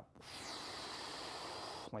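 A man breathing out in one steady hiss, about a second and a half long, as he pushes up on the barbell neck press.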